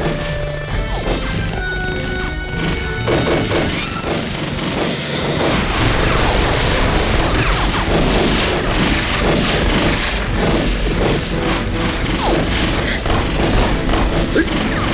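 Film battle soundtrack: dramatic music under gunfire and explosions. It grows louder and denser about five seconds in, with many sharp shots and blasts.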